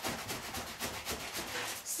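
Cardboard shipping box being handled and opened by hand: a run of small irregular scrapes, rustles and clicks of cardboard.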